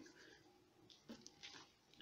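Near silence: room tone, with a few faint brief sounds about a second in.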